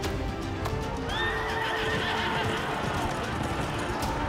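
A horse whinnies about a second in, one long call of about two seconds, over dramatic trailer music.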